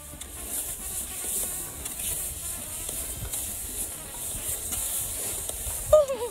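Steady hiss of cross-country skis gliding over the snow track, with faint music underneath.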